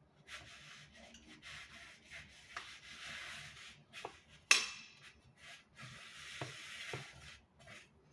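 A utensil scraping around the inside of a cooking pot in repeated strokes, with one sharp ringing clink against the pot about halfway through.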